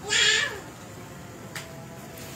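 A cat meows once: a short, high call that falls in pitch at its end.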